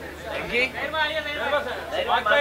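Voices of several people talking over one another, with no clear words.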